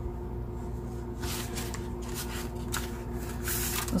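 A paper greeting card slid out of its paper envelope and handled, giving a few light rustles and scrapes of paper, strongest near the end, over a faint steady hum.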